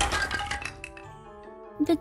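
Sound effect of a small wooden chair cracking and breaking apart: a sharp crack, then a short run of splintering crackles that die away within about a second, over soft background music.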